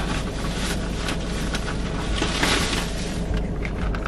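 Rustling and crinkling as a takeout bag and plastic bowl are handled, over a steady low hum of the car cabin.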